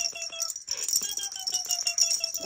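Infant laughing in two long runs of quick, evenly pitched giggles that fall slightly in pitch, with a break about half a second in, while a rattle in a plush avocado toy clicks quickly as it taps her head.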